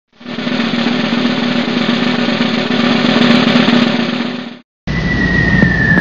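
Intro music: a steady drum roll that fades in and runs about four and a half seconds before cutting off. After a short gap, outdoor background comes in with a steady high tone that slowly falls in pitch.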